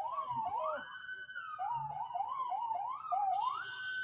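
Police siren in quick rising sweeps, about three a second, then climbing to one steady held tone near the end.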